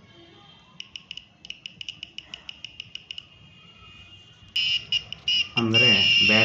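Piezo buzzer in an ultrasonic distance-sensor obstacle alarm beeping, a high-pitched tone in rapid pulses of about seven a second, then sounding loudly and almost continuously from about four and a half seconds in, as the sensor reports an object close by. A voice starts near the end.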